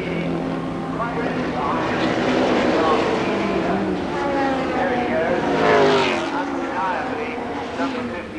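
Racing saloon car engines running at high revs as the cars lap the circuit, their pitch sweeping up and down through gear changes. The sound is loudest about six seconds in, as a car passes close by.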